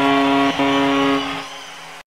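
A live band's final chord held as a sustained ringing tone. It breaks off briefly about half a second in and fades away over the last second.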